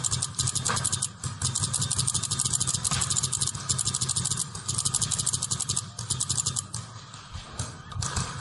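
Paintball markers firing in rapid strings of shots, many a second, with a short break about a second in and the shots thinning out near the end.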